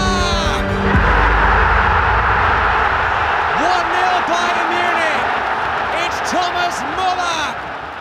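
Football stadium crowd erupting into a loud, sustained roar at a goal, with a commentator's excited shouts rising and falling over it from about the middle on. Background music fades out about a second in as the roar takes over.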